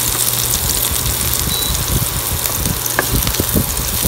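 Diced onions sizzling in hot oil in a nonstick wok, stirred with a wooden spatula that scrapes and taps against the pan a few times.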